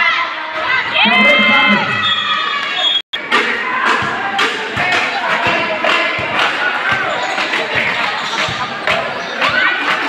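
Spectators shouting and cheering over a basketball game, with a ball bouncing on the court as a player dribbles. The sound drops out for an instant about three seconds in.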